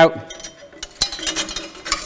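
Metal locking pin being pulled out of the steel catch of a manual drum depalletiser: a sharp click about a second in, followed by light metallic clinking as the pin and catch are handled.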